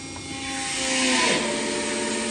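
Cincinnati 60CBII press brake running through a speed change: a hiss that swells over the first second, then settles into a steady hum.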